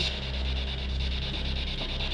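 A steady low hum with a faint, steady high tone above it. No distinct knock or other event stands out.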